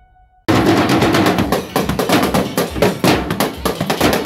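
The last note of a music sting dies away. About half a second in, a street drum corps of snare and bass drums cuts in abruptly, playing a loud, fast, dense beat.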